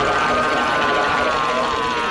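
A cartoon dog screaming in terror: one long, high-pitched scream that drifts slowly down in pitch.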